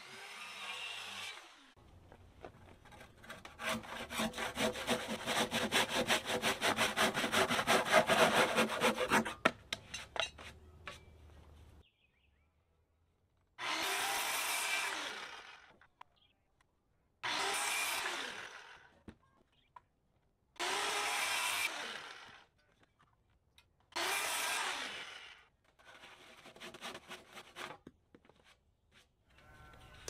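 Sawing through a thick timber beam: several seconds of rapid handsaw strokes, then four short cuts with a corded circular saw, each lasting under two seconds with a pause between them.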